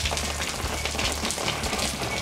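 Water from a rooftop solar panel washing system running and dripping off the edge of a metal-framed solar patio cover, a steady rain-like patter, with a steady low hum underneath.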